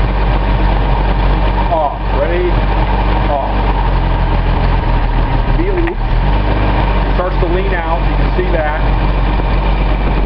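Datsun L28 straight-six fuel-injected engine idling steadily while cold and running rich, with the oil cap off to let in an air leak.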